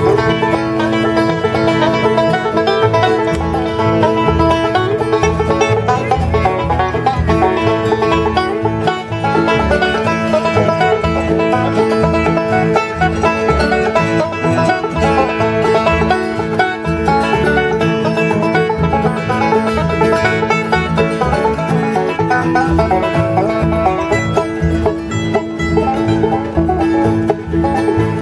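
Bluegrass jam on acoustic instruments: banjo, mandolin and acoustic guitar playing a tune together without a break.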